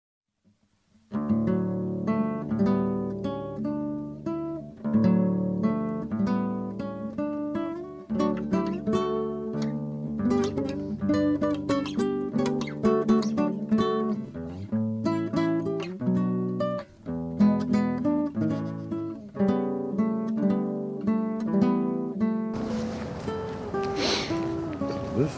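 Instrumental acoustic guitar music, picked notes starting about a second in. A steady hiss comes in under it near the end.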